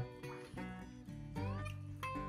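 A tabby cat meowing, begging for the snack in the owner's hand, over background music.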